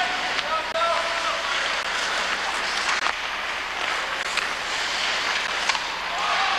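A steady, noisy din with indistinct voices and occasional sharp clicks.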